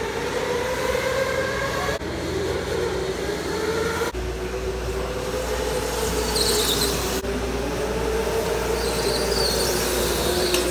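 Electric go-karts running on an indoor concrete track, their motors giving a steady whine that wavers slightly in pitch. Tyres squeal in short bursts twice in the second half.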